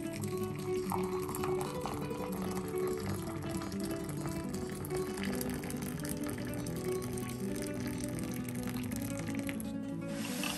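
Background guitar music, with water poured in a steady thin stream into a ceramic mug over a tea bag.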